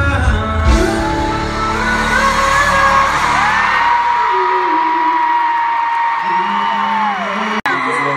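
Live pop band and lead singer through a phone recording in a stadium crowd: the singer holds one long note as the band thins out beneath it, over the crowd's screaming. Shortly before the end the sound cuts off abruptly for an instant.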